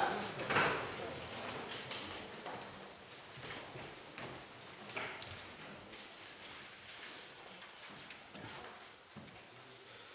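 Footsteps, shuffling and scattered small knocks and clicks of people moving about and settling in a large room.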